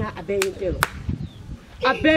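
Two sharp hand claps about half a second apart, struck between a woman's animated words.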